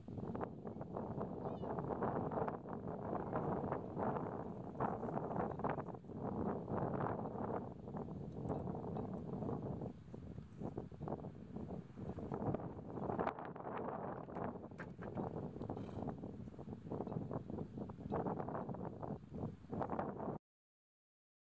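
Wind buffeting the microphone: a rough, gusting rumble that rises and falls without letting up.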